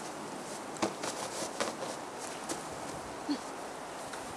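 Snow crunching and a coat rustling as a person gets up out of the snow and picks up a hat: a few short, separate crunches over a steady background hiss.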